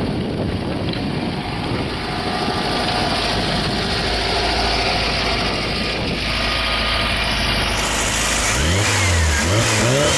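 A 1960 Volkswagen Beetle's air-cooled flat-four engine running as the car rolls and settles to idle. It is then revved in a few quick blips near the end, the pitch rising and falling with each one.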